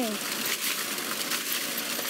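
Water jetting from a backyard PVC-pipe sprinkler and splashing onto grass: a steady hiss with irregular crackly spatters as a dog bites at the stream.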